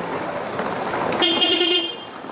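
A car drives past close by over cobblestones, with steady tyre and engine noise. A little past halfway, a car horn sounds once for most of a second.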